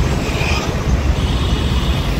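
Steady rumble of road traffic passing on a busy multi-lane city road.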